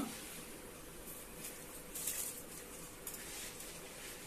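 Faint steady hiss from a gas burner heating a pot of spiced water, with a few soft rustles.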